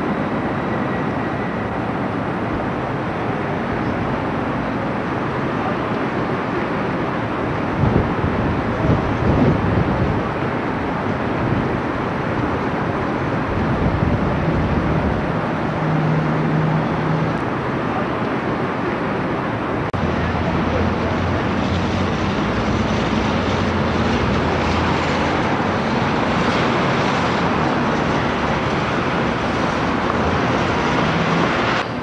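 Steady outdoor city noise, a constant wash of distant traffic picked up by a camcorder microphone, with a few low thumps about eight to ten seconds in.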